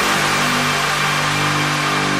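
Electronic trance music in a breakdown: a sustained low synth chord with a high hiss above it and no beat.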